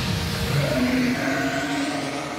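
Cartoon sound effect of a Bakugan monster materializing in a burst of light: a rushing, rumbling swell, followed about a second in by a held, droning tone.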